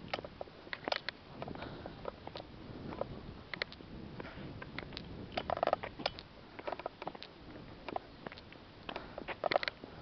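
Irregular clicks, knocks and rustles of a handheld camera being carried along on foot, with the loudest clusters of knocks about halfway through and near the end.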